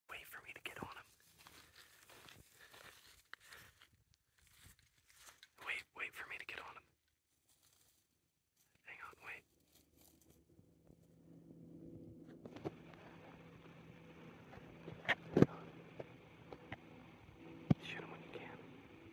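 Whispering in short hushed bursts, then a faint steady low hum with a few sharp clicks, the loudest pair about fifteen seconds in.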